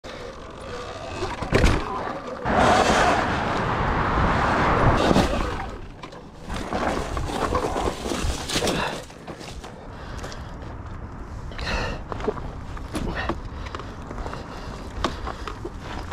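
Sur Ron electric dirt bike riding over a dirt trail: tyre and rolling noise with scattered knocks and rattles from the bike over bumps. It swells into a louder rush of noise for a few seconds near the start.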